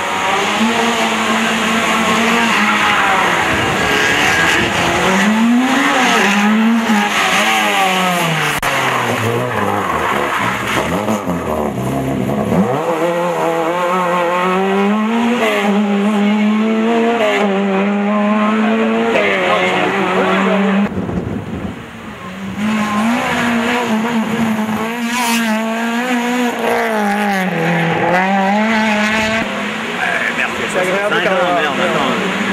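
Rally car engines revving hard under acceleration, the pitch climbing through each gear and dropping sharply at each shift, several times over as cars pull away and drive past.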